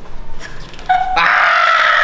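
A rooster crowing, loud and drawn out, starting about a second in.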